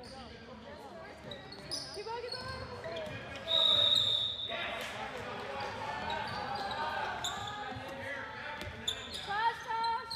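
Handball bouncing on a hardwood gym floor amid players' shouts in a large hall, with one referee's whistle blast of about a second a little past three seconds in, the loudest sound.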